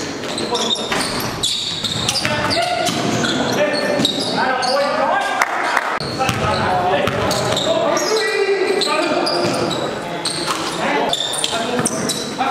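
A basketball dribbling and bouncing on a gym floor, with indistinct voices of players on the court.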